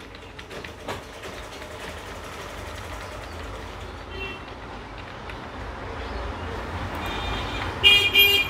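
Background traffic rumble with a short, high vehicle horn toot about four seconds in and a louder horn blast near the end.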